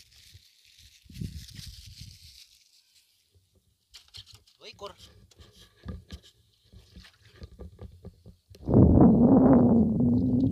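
Scattered clicks and knocks of gear being handled in a small boat, then near the end a motor starts running loudly with a steady low hum.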